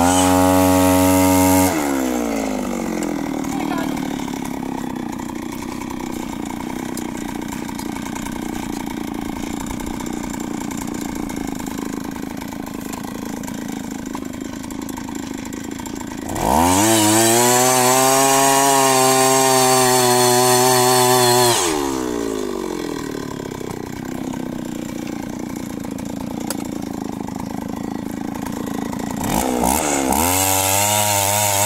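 Engine of a two-man earth auger (post hole digger) switching between idle and full throttle while drilling a hole in soil. It revs high for about two seconds at the start, drops to a steady idle, revs up sharply again for about five seconds around the middle, idles, and climbs again at the very end.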